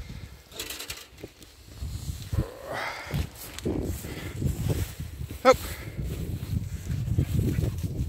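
A person clambering over a wooden stile and pushing through long grass and nettles: irregular footfalls, thuds and rustling of vegetation, with two short vocal sounds, one about three seconds in and one just past halfway.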